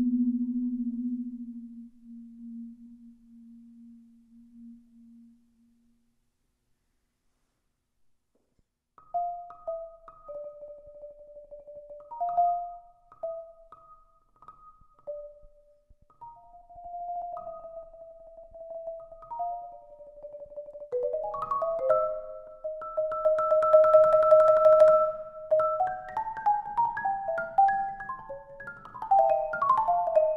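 Solo marimba played with four yarn mallets on a Marimba One concert marimba. A low note fades out, then after a few seconds of silence sparse single notes sound in the middle range, building about two-thirds of the way in to held, rolled chords and quicker runs near the end.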